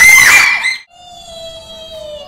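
A child's loud, high-pitched shriek that cuts off suddenly about a second in. It is followed by a quieter long held tone that slowly falls in pitch.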